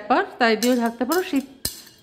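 A woman talking, with one short clink of crockery about one and a half seconds in.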